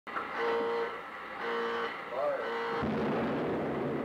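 Opening title sound: three short held tones, then a sudden deep boom about three seconds in that rumbles and fades out.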